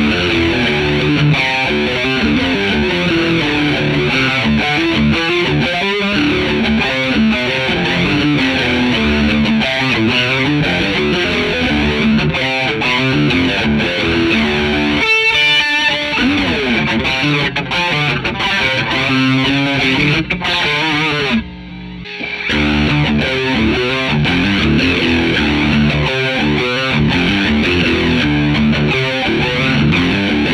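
Electric guitar, a Fender Stratocaster through a Fender '65 Twin Reverb amp, played with distortion through a Subdecay Starlight V2 flanger, giving riffs a sweeping, jet-like flange. There is a brief break in the playing about 21 seconds in.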